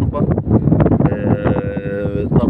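A cow mooing once: one long call of steady pitch that starts about a second in, over wind noise on the microphone.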